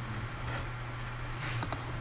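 A few faint computer keyboard clicks, typing a search, over a steady low hum.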